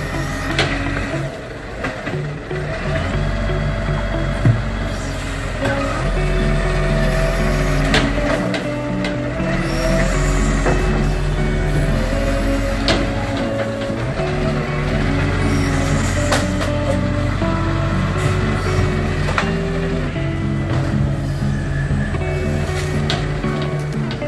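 Background music with a melody and bass line, the notes changing about twice a second, over a steady low vehicle rumble.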